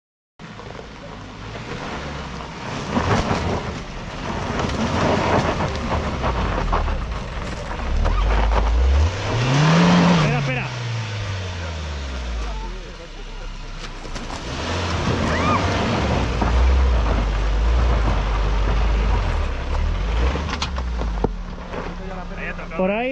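Suzuki Jimny JB74's four-cylinder petrol engine working at low revs as it crawls over a steep, rutted off-road slope. The revs rise and fall back once about ten seconds in, with scattered knocks from the tyres and body over the rough ground.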